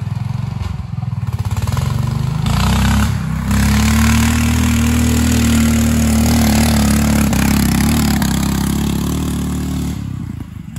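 Duromax 440 Honda-clone single-cylinder engine, governor deleted, running loud; its revs climb about three seconds in and then hold steady.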